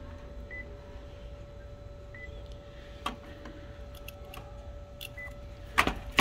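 Office multifunction copier's touchscreen giving three short high beeps as its buttons are tapped, over the machine's steady hum. Near the end come a few clicks and two loud clacks as the lid over the scanner glass is lifted.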